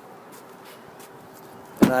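Quiet background noise with a few faint handling knocks, then a man's voice starts near the end.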